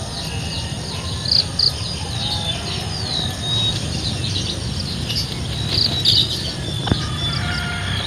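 Outdoor ambience of small birds chirping in short high calls and whistles, over a steady high insect drone and a low rumble. A single sharp click comes about seven seconds in.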